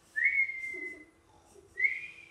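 Whistling: two whistled notes at about the same pitch, each sliding up quickly and then held level. The first lasts about a second; the second starts near the end.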